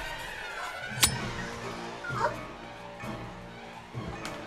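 Suspense film score of sustained held tones, with one sharp hit about a second in and a short, bending cry-like sound just after two seconds.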